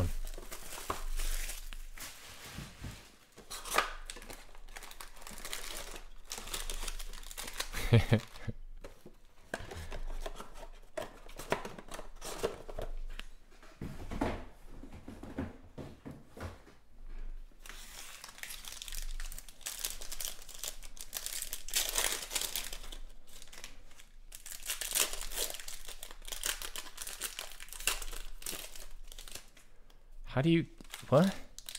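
Plastic shrink wrap being torn off a trading-card hobby box, then foil card packs crinkling and tearing as they are handled and opened, in a run of irregular rustles and rips.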